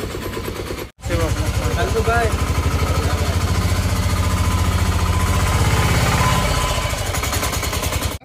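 Auto-rickshaw engine running under way, heard from inside the passenger cabin as a fast, even chugging that eases near the end.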